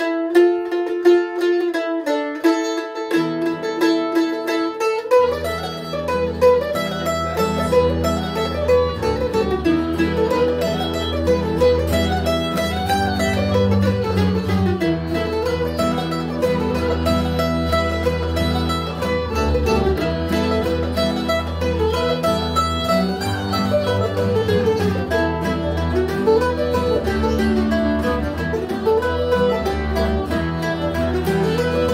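Acoustic string band playing an old-time fiddle tune. A mandolin opens alone, more instruments join about three seconds in, and from about five seconds a bowed upright bass, fiddle and acoustic guitar play along together.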